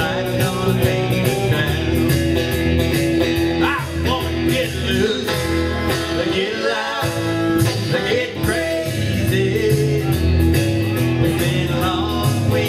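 Live band music: guitar playing with sung vocals.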